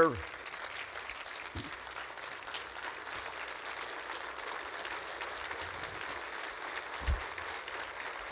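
Audience applauding steadily, with a brief low thump near the end.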